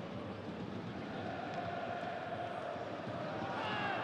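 Pitch-side ambience of a football match in an empty stadium: a steady hiss of open-air atmosphere with a faint held tone, growing a little louder near the end.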